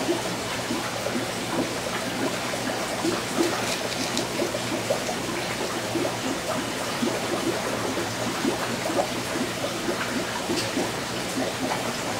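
Aquarium aeration bubbling: a continuous stream of air bubbles gurgling in quick irregular blips, over a low steady hum.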